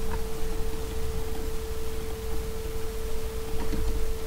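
A steady electronic tone held at one pitch, over a low background rumble.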